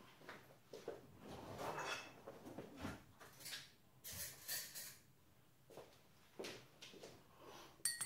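Faint, scattered clinks and knocks of cutlery and dishes being handled, with a brighter clatter about halfway through. Right at the end a metal spoon starts stirring and ringing against a glass mug of coffee.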